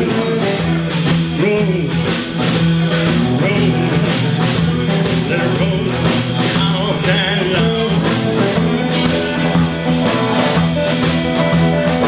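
Live blues-rock band playing: drum kit, electric bass and electric guitars, with the singer holding the word "rolling" at the start and lead electric guitar playing bending lines over the groove.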